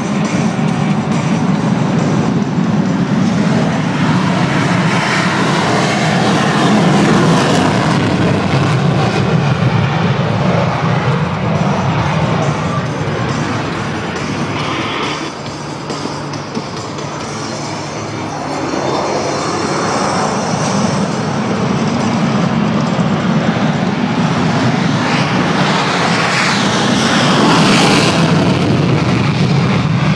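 Jet engine noise from RAAF F/A-18 Hornet fighter jets, swelling as they pass about five seconds in and again for a longer pass in the second half, with music playing underneath.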